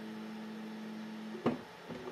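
Steady electric hum from an Anycubic Kobra 3 Combo's ACE Pro filament unit as it works the filament feed. The hum cuts off with a short click about one and a half seconds in.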